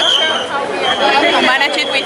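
Crowd chatter: several people talking at once in a busy, dense crowd. A steady high-pitched tone sounds over the voices, breaks off about half a second in and returns for a while.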